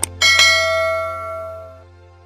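A mouse-click sound effect, then a notification-bell chime struck twice in quick succession and ringing out, fading over about a second and a half. Under it a low steady music tone fades away.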